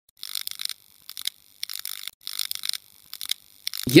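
About six short, irregular bursts of high-pitched hiss, each under half a second, with near silence between them.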